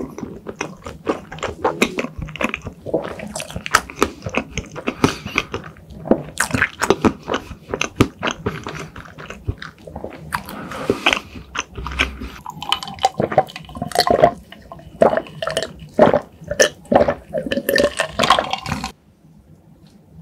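Close-miked mouth chewing a large mouthful of soft cream and crepe cake: a dense run of wet, sticky smacks and clicks. It stops abruptly near the end.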